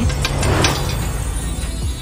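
Background music, with a quick run of sharp clicks in the first second or so: popcorn popping under an upturned metal bowl.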